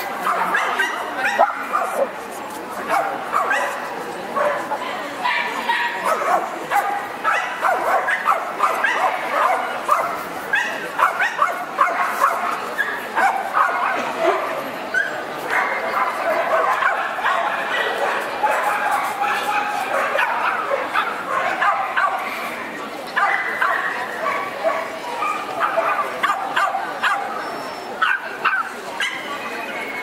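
Dogs barking and yipping again and again over a constant murmur of people talking in a crowded show hall.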